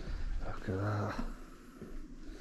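A man's voice: one short murmured vocal sound about half a second in, with no clear words.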